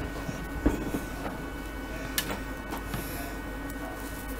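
A few light clicks and knocks from handling a Pioneer CT-300 cassette deck's metal chassis, mostly in the first second and one more a little after two seconds in, over a steady hum.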